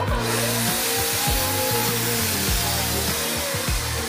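Wagner Flexio 2000 handheld HVLP paint sprayer switched on, its turbine starting suddenly and then running with a steady loud rush of air.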